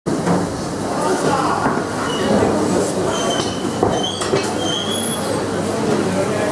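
Busy fish-market din: a constant dense mix of background voices and clattering, with several short high squeaks around three to four seconds in.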